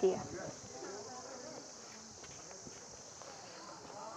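A steady, high-pitched insect chorus, with faint distant voices underneath. A woman's voice ends a word right at the start.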